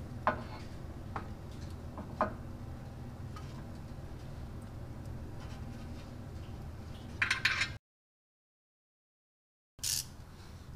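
Small metal clicks of a bolt, washer and lock washer being handled and threaded in by hand, three sharp ones in the first couple of seconds, over a steady low hum. A short clatter of metal parts or tools comes near the end, then the sound cuts out completely for about two seconds.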